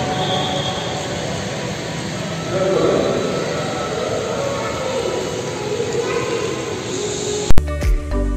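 Steady hum of a busy indoor hall, with faint music and murmuring voices mixed in. About half a second before the end a sharp click cuts it off, and music with a soft beat about twice a second starts.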